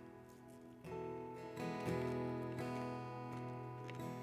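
Soft, quiet acoustic guitar playing sustained chords, with a new chord strummed about a second in and another shortly after.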